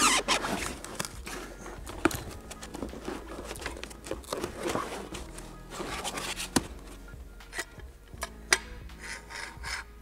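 Rubbing and scraping as the metal body of a hot-tapping machine is handled and lifted out of its foam-lined carrying case, with a few sharp metal clicks, over quiet background music.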